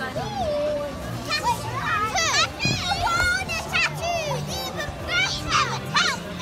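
Young children's voices shouting and squealing in high-pitched bursts as they play, loudest about two seconds in and again near the end, over background music.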